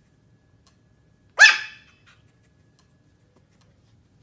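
A Pomeranian puppy gives one short, sharp, high-pitched bark about a second and a half in.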